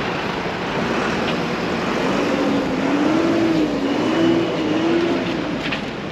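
Bus engines running in a busy bus yard: a steady diesel drone mixed with traffic noise. A drawn-out, wavering tone rises over it for about three seconds in the middle.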